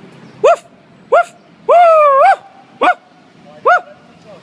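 Loud dog-like barking: four short high barks spaced well under a second apart, with one longer wavering yelp about two seconds in.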